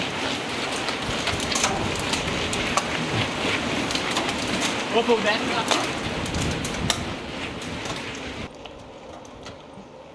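A pack of mountain bikes riding past close by on a stone lane: a steady rush of tyre noise with many clicks and rattles from the bikes. The sound drops to a quieter level about eight and a half seconds in.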